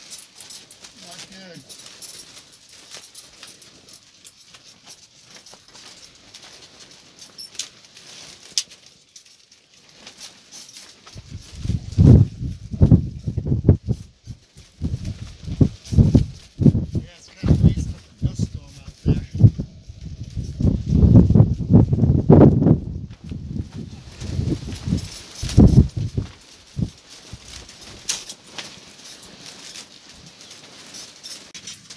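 Wind from a strong storm hitting the microphone in irregular loud low gusts. It starts about a third of the way in, is heaviest around the middle, and eases off near the end after a quieter opening stretch.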